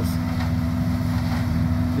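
City leaf vacuum truck running steadily, its engine-driven blower pulling leaves up the large suction hose. The sound is an even drone with a constant low hum.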